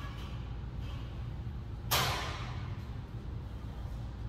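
A weight plate loaded onto a barbell sleeve clanks once against the plates already on it, about two seconds in, with a short ring afterwards.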